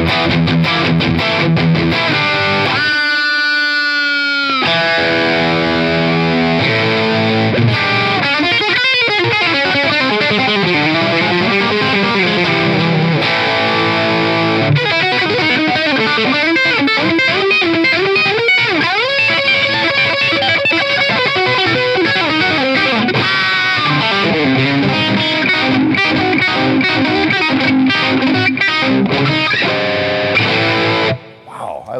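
Electric guitar (a Telecaster) played through a modelled Mesa/Boogie Mark IV lead channel with high-gain distortion: an improvised lead, with one long held note bending slightly upward about three seconds in, then busier runs and phrases.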